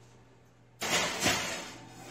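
An oven door is opened and a foil-lined pan of chicken wings is slid in: a sudden scraping rush starts just under a second in and fades over about a second, with a knock partway through.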